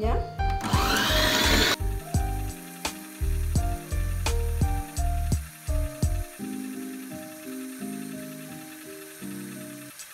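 Electric stand mixer running, its wire whisk whipping cream in a stainless steel bowl: a loud motor whir for the first second or two that cuts off suddenly. Background music with a melody and beat carries on through the rest.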